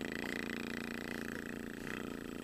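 A three-month-old baby making one long, steady, low-pitched vocal sound.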